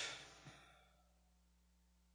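A short, soft breath from the lecturer in the first half-second, then near silence.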